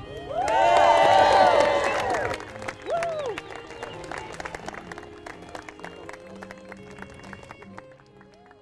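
A crowd cheering and whooping loudly for about two seconds, with one more whoop just after, then clapping that slowly fades. Music plays underneath.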